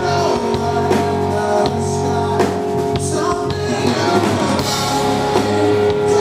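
Live rock band playing: a male singer's lead vocals over guitar and drum kit.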